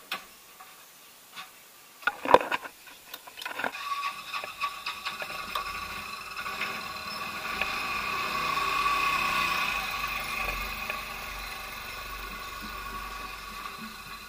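A few knocks and clicks as the motor scooter is handled, then its small engine starts about four seconds in and runs steadily, swelling a little toward the middle before settling.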